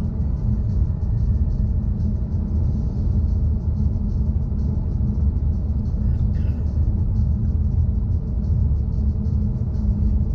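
Steady road and engine rumble heard inside a moving car's cabin, mostly deep tyre-on-asphalt noise at an even cruising speed.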